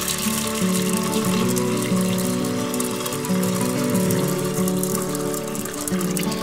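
A steady stream of water pouring into a pressure cooker's inner pot onto dry peanuts and pearl barley, filling it. Background music plays throughout.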